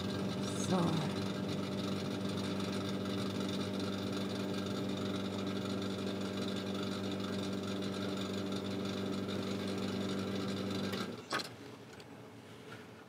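Espresso machine pump running through a shot extraction, a steady low buzzing hum of even pitch and loudness. It cuts off about eleven seconds in with a short sharp click as the brew is stopped.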